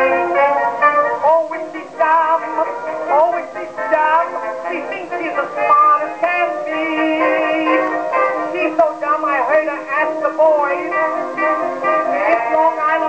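A 1922 acoustically recorded Columbia 78 playing on a Victor Type II acoustic phonograph: the dance-band song accompaniment, with several instrument lines moving at once. The sound is narrow-range, with almost nothing above the middle treble, and faint surface hiss.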